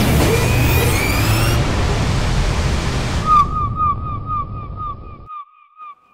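Soundtrack sound effect: a loud noisy whoosh over a low rumble, with falling sweeps in its upper part, cutting off suddenly about five seconds in. From about halfway, a short bright tone repeats about four times a second.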